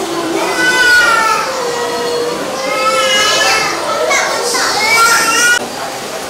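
High-pitched children's voices calling and shouting over the chatter of a crowd, breaking off suddenly near the end.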